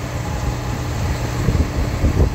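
A vehicle engine running steadily: a low rumble with a faint steady hum over it, and a couple of soft low thumps about one and a half seconds in.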